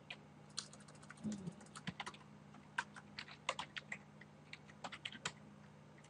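Computer keyboard being typed on, with irregular quick key clicks in short runs as a terminal command is entered.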